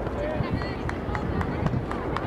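Voices of players and spectators calling across a soccer field, heard from a distance over a steady low rumble, with a few faint sharp taps.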